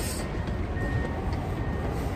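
Steady low vehicle rumble, with music playing along with it.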